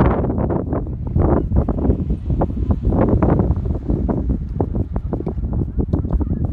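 Wind buffeting the microphone in loud, uneven gusts, a heavy low rumble.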